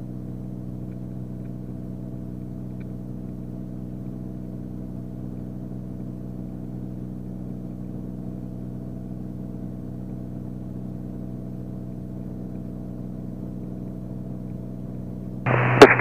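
Steady drone of a Beechcraft Bonanza's six-cylinder piston engine and propeller in flight, an even hum that holds its pitch and level throughout.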